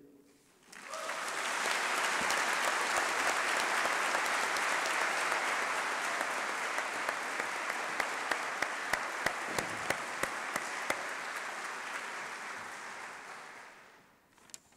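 Audience applauding, swelling up about a second in, holding steady, then dying away near the end. A string of sharper single claps stands out close by in the middle.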